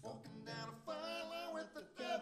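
A man's voice singing a held, wavering note without clear words, over sparse plucked-string accompaniment, in a live solo song performance.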